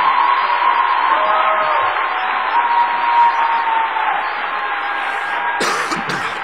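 Audience applauding and cheering after a line in a speech, with whoops and sustained calls over the clapping. A sharp click sounds near the end.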